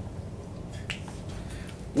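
Classroom room tone in a pause between spoken sentences: a steady low hum, with one short faint click about a second in.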